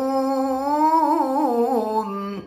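A man's solo voice in melodic Quran recitation (tilawah), holding one long vowel. The pitch climbs gently over the first second, then breaks into quick trilling turns.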